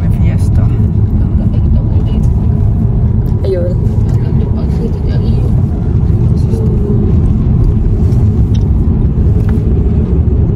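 Moving car heard from inside the cabin: a loud, steady low rumble of road and engine noise.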